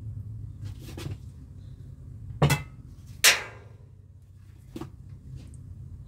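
A few knocks and clatters of kitchen utensils and dishes being handled on a wooden cutting board, the two loudest close together near the middle, the second of them ringing briefly, over a steady low hum.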